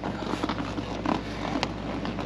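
Seat cover material rustling and rubbing against the seat as hands push its anchor tabs down into the gap between seat back and cushion, with two light clicks.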